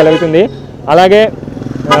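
A man speaking in short phrases, with a vehicle engine running steadily in the pauses between them.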